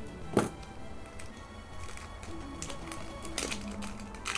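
Scissors snipping open a foil booster pack: a few short sharp clicks and crinkles, the first and loudest about half a second in, over faint steady background music.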